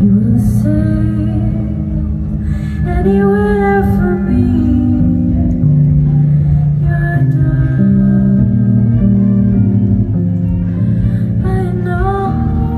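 Live song: a Yamaha electronic keyboard holds sustained low chords that change every second or two, with a woman's voice in brief wordless phrases over them.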